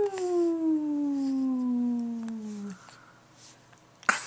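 A voice holding one long drawn-out vowel that slides steadily down in pitch for nearly three seconds, then stops.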